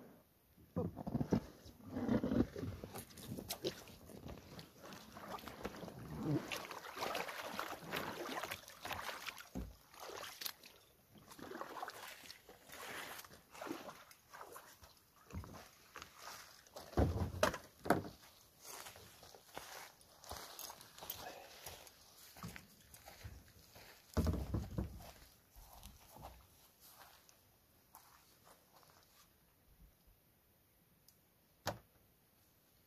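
Irregular knocks, scrapes and splashes as an inflatable kayak and paddles are handled at a pebble shore while people climb out, with footsteps on the stones. A few louder thumps come in the second half.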